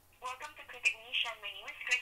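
A person's voice coming through a phone, thin and narrow-sounding like a phone line, starting a moment in after near-silence.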